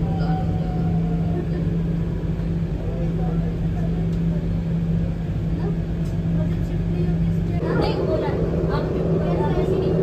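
Steady low hum inside a moving RapidX (Namo Bharat) train carriage. A voice joins the hum about three-quarters of the way through.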